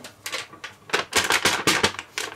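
A sheet of paper being unfolded and handled, a quick run of crisp crackles and rustles that thickens about halfway through.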